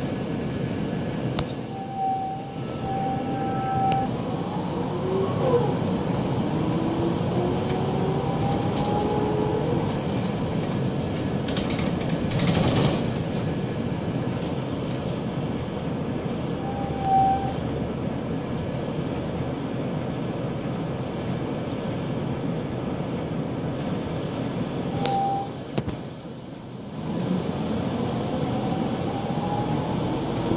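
Inside a city bus in motion: its engine and drivetrain running, with whines that rise in pitch as it pulls away and gathers speed, a few short beeps, and a brief burst of noise about halfway through. The engine noise drops briefly near the end before it pulls away again with another rising whine.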